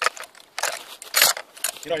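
Metallic rattling and clacking of an M14-pattern rifle and its sling hardware as it is swung around by hand, in several quick bursts.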